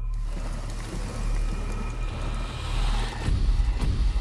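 The intro of a rap music video playing: a wash of noise building over a deep, steady low rumble, with a heavier, pulsing bass setting in about three seconds in.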